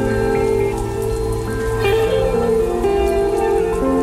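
Instrumental music of held, overlapping notes that change every second or so, layered over a steady rain sound.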